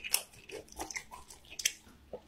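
A person chewing food with the mouth closed: irregular wet clicks and smacks a few tenths of a second apart.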